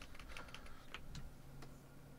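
Faint, irregular clicking of computer keys, about eight to ten clicks in the first second and a half, then stopping.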